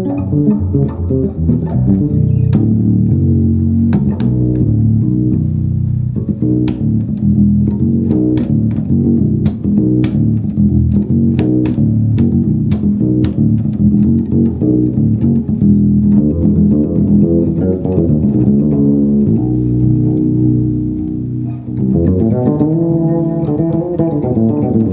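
Five-string fretless electric bass played solo. A busy line of plucked notes with many sharp, percussive attacks runs through the middle, and the playing turns to longer, ringing notes near the end.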